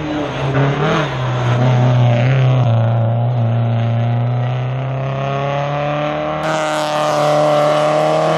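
Hillclimb race car's engine running hard under acceleration. Its pitch drops at a gear change about three seconds in, then climbs steadily as the car speeds up.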